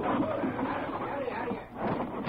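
Indistinct voices in an old radio drama recording, with a brief knock near the end.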